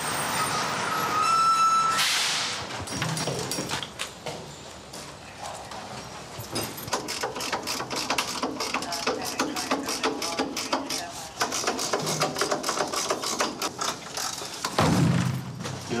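Metal tools worked at a door lock to force it open: a brief whine near the start, then a long run of rapid metallic clicking and rattling.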